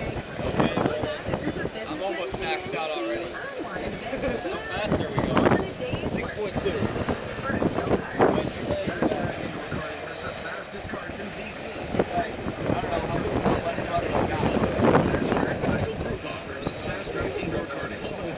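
Wind buffeting the microphone and water rushing along the hull of a sailboat heeled over in about 25 knots of wind, under indistinct talk among the crew.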